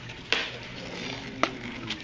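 Two sharp clicks about a second apart and a fainter one near the end, from hands handling pushpins and a string loop on a sheet of cardboard.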